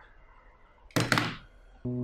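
One dull thunk about a second in. Sustained keyboard notes of background music start just before the end.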